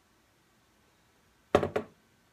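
A pint glass set down on a hard surface: two quick knocks close together about a second and a half in.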